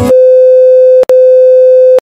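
Television test-card tone: a loud, steady, single-pitched electronic beep, broken by a very short gap about a second in.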